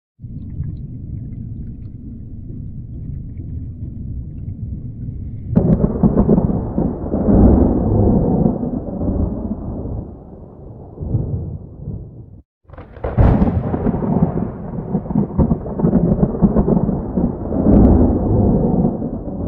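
Rolling thunder: a low rumble that grows louder about five seconds in, a brief break, then a sharp crack followed by more rumbling.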